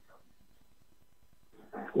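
A pause in a man's speech: near silence, with his voice trailing off at the start and coming back faintly just before the end.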